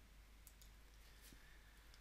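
Near silence: room tone with a few faint computer mouse clicks, about half a second in and again a little after a second.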